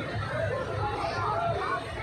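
Crowd chatter: many people talking at once in an overlapping babble of voices, with no single voice standing out.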